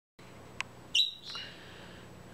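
Bourke's parakeet giving a single short, sharp chirp about a second in, with a fainter tick just before it.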